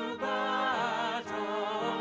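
Music of sung voices holding long notes with vibrato, changing note every half second or so.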